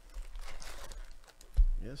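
Foil-wrapped trading card packs rustling and clicking as they are handled and lifted out of a cardboard hobby box, with a dull thump about a second and a half in.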